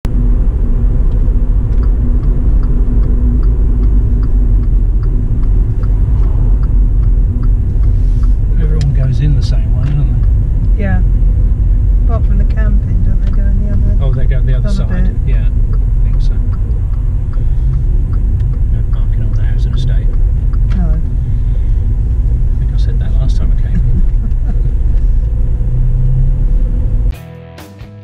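Steady low rumble of road and engine noise inside a moving car's cabin, with indistinct voices over it in the middle stretch. The rumble cuts off about a second before the end as guitar music starts.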